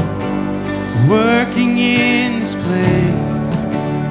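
A man sings a slow worship song to acoustic guitar accompaniment. About a second in, his voice slides up into a long held note with vibrato.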